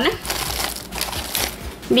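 A thin clear plastic bag crinkling and rustling with irregular crackles as a hand rummages in it and draws out a sheet of stickers.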